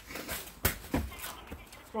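Two quick knocks about a third of a second apart, a little over half a second in, from the plastic-wrapped cardboard couch box being handled.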